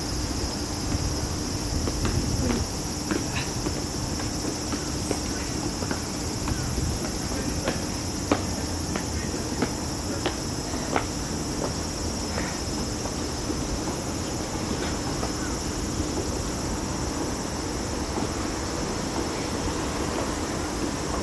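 A steady, high-pitched insect chorus, with scattered footsteps tapping on stone steps as people climb past; the sharpest taps come about eight and eleven seconds in.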